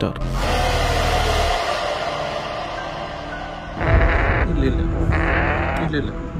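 Young African grey parrot's raspy begging calls: a long hissing call with a held tone in the first half, then two shorter raspy calls in the second half.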